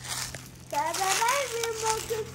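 A young child's voice: a drawn-out, high, wavering call starting about two-thirds of a second in, after a brief crunching noise at the start.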